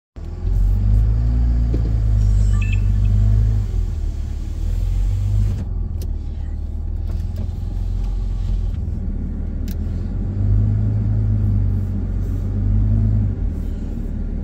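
Low rumble of a car driving on a paved road, heard from inside the cabin: engine and tyre noise that swells louder for the first few seconds and again about ten seconds in.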